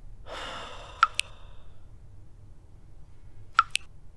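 Two quick double clicks like phone message-notification pops, one about a second in and one near the end. Just before the first comes a short breathy rush.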